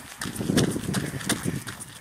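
Jogger's footfalls, a rhythmic series of thuds, over a rough low rumble on the microphone.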